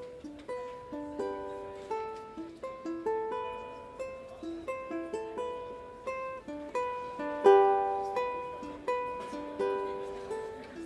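Ukulele picked in a slow instrumental introduction to a love song: separate plucked notes, a few a second, each ringing briefly and fading, with one stronger note a little past halfway.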